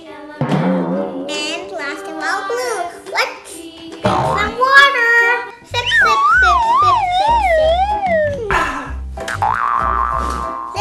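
Children's background music with cartoon sound effects: pitched tones swooping up and down, then a wobbling tone that slides downward over a steady low beat in the second half.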